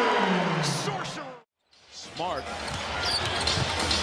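Arena crowd noise under a drawn-out falling voice fades to a brief dead silence about a second and a half in. The arena noise comes back with a basketball being dribbled on a hardwood court.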